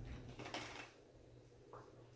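Faint handling noise of wargame miniatures being slid and set down on the gaming mat: a brief soft sliding rustle about half a second in and a small knock near the end.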